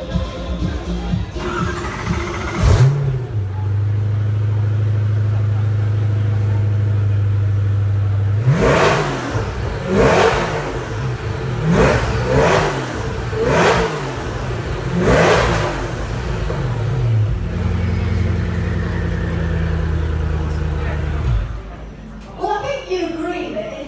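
Koenigsegg Agera RS Naraya's twin-turbo V8 starting up and settling into a steady idle. It is then blipped about six times in quick succession, each rev rising and falling, and it returns to idle before cutting off near the end.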